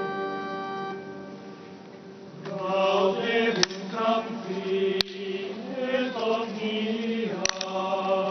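Church choir singing liturgical chant in a reverberant cathedral: a held chord dies away in the first two seconds, and the choir starts a new sung phrase about two and a half seconds in. A few sharp clicks sound over the singing.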